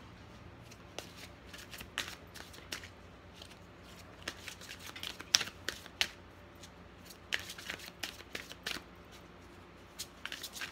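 A large deck of divination cards shuffled by hand: an uneven run of soft card slaps and flicks, sparse at first and busier from about the middle, with one sharper snap near the middle.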